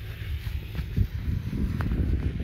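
Wind rumbling on the phone's microphone, a gusty low buffeting, with a single knock about a second in.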